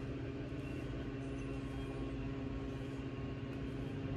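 Steady low mechanical hum with several even, unchanging tones.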